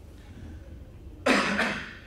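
A man coughs once, a single sharp cough a little over a second in.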